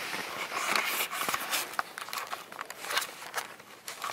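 Rustling and crackling handling noise from a handheld camera brushing against a nylon camouflage jacket as it is carried outdoors, with many short sharp clicks scattered through it.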